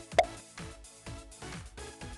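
Electronic background music with a steady beat of about four beats a second. One short, loud pop sounds just after the start.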